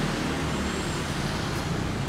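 Steady street traffic noise: a continuous low hum of motor vehicles with no single event standing out.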